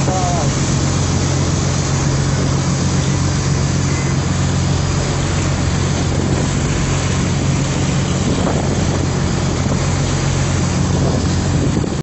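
A boat's engine running at a steady low drone while under way, with water rushing along the hull and wind buffeting the microphone.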